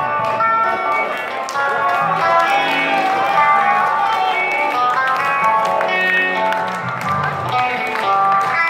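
Live punk rock band playing loudly, with electric guitars to the fore.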